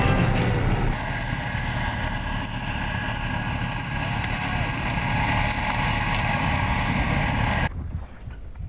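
Engine of a tracked armoured vehicle running as it drives, a steady drone over a low rumble. It comes in about a second in and cuts off abruptly near the end.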